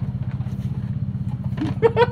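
Motorcycle engine idling with a steady, even low putter.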